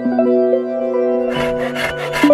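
Background music with plucked-string notes. About a second and a half in, a hand saw starts cutting through a tube with quick, even back-and-forth strokes.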